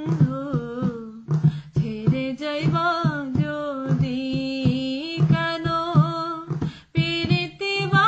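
A woman singing a Bengali baul song solo, holding long wavering notes over instrumental accompaniment with a steady low drone and a regular percussion beat; the voice breaks briefly just before the end.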